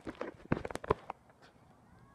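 Fireworks crackling: a quick string of sharp cracks, densest about half a second in and stopping after about a second.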